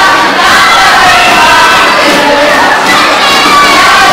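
A large group of young voices shouting and chanting together, loud and overlapping without a break.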